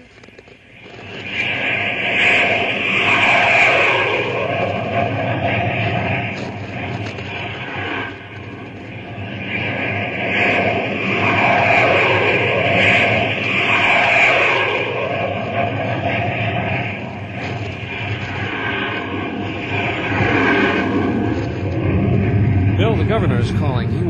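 Radio-drama sound effect of aircraft engines droning overhead, swelling and fading in several waves with swooping rises and falls in pitch.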